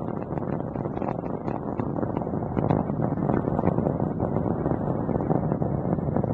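Steady rumble from the Space Shuttle's solid rocket boosters and main engines during ascent, heard from the ground, with faint crackling through it.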